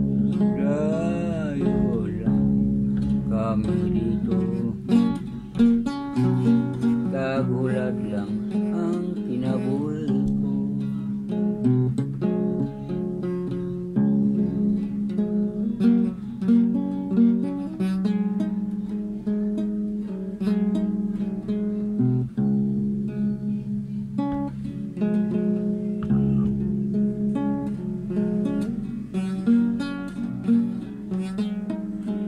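Acoustic guitar music, plucked and strummed notes in a continuous piece.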